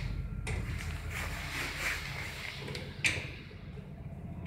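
Old ZUD passenger lift at a landing: a low machinery hum with a scraping, sliding noise from the car's doors, then one sharp click about three seconds in.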